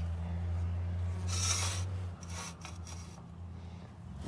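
Square steel sprayer-boom extension tube being slid out of the boom by hand, metal scraping on metal, loudest about a second and a half in. A small engine hums steadily underneath.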